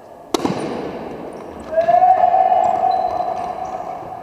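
A softball bat hits a slowpitch pitch with one sharp crack that echoes around the sports hall. About a second and a half later comes a loud, long held shout on one steady pitch, with faint high sneaker squeaks on the gym floor.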